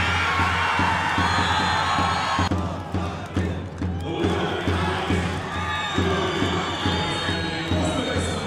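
Arena crowd cheering and shouting over background music with a steady bass beat; the cheering dips briefly a couple of seconds in and then picks up again as the ippon is given.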